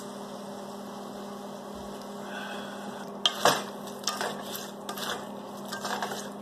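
Stir-fry vegetables frying in a pot over a steady low hum. From about three seconds in, a wooden spoon stirs through them with a run of short scrapes and knocks against the pot.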